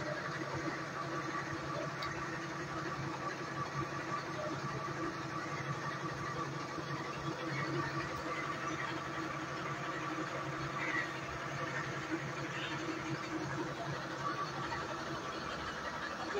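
A fire engine's engine running steadily, a constant hum with several steady tones.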